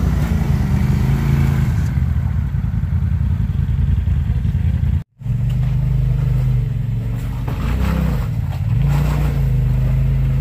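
Polaris RZR side-by-side UTV engines working off-road. In the first half the engine note rises and falls as a machine climbs a dirt bank. After a brief cut to silence about halfway through, a steadier engine note carries a machine crawling down through a deep muddy rut, dipping and picking back up near the end.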